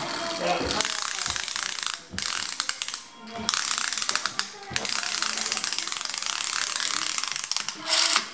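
A plastic toy's wheels and gears give a rapid ratcheting clatter as it is pushed along a wooden surface, in runs broken by short pauses about two, three and four-and-a-half seconds in.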